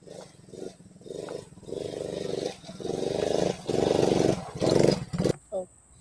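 Small youth ATV engine revving in a series of short bursts, each under a second, growing louder through the middle and cutting off about five seconds in.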